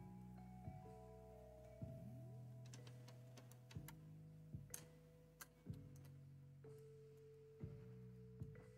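Near silence but for faint background music of long held notes, with a few soft clicks of tools and parts being handled.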